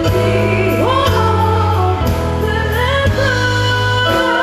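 Live pop/rock cover band playing: a female lead vocal sung with slides and vibrato over electric guitars, a steady bass line and drums, heard through the venue's PA.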